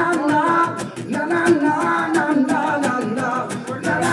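Live acoustic band playing: strummed acoustic guitars keep a steady rhythm under a wordless sung vocal line.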